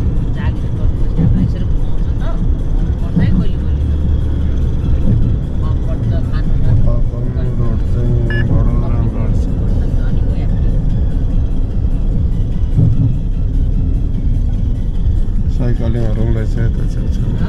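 Steady low rumble of a taxi on the move, heard inside the cabin, with music and a voice over it; the voice is clearest from about six to nine seconds in.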